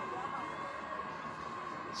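Steady background murmur of a stadium crowd as heard on a TV cricket broadcast, fairly quiet and even, with a faint steady tone running through it.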